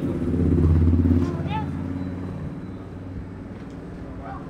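A motor vehicle engine running close by, loudest about a second in and then fading away, with faint voices over it.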